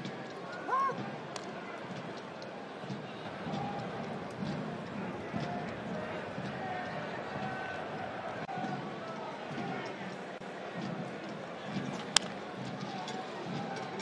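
Ballpark crowd murmur with scattered voices, then the single sharp crack of a bat hitting a pitched baseball about twelve seconds in, a weak ground-ball contact.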